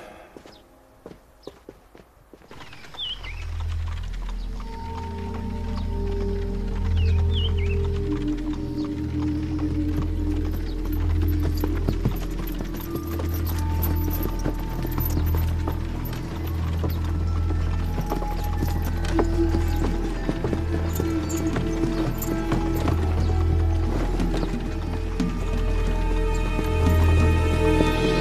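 Horses' hooves clip-clopping under background music with a steady low pulsing beat. The music and hoofbeats come in after a quiet first couple of seconds.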